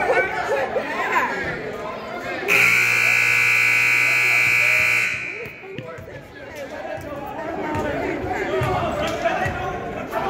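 Gym scoreboard buzzer sounding one loud, steady blare of about two and a half seconds, starting a couple of seconds in, over crowd chatter and children's voices in a large hall.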